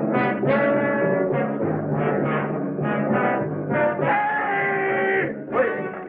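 Dramatic orchestral film score led by brass: a run of short, stabbing notes, then one note held for about a second near the end.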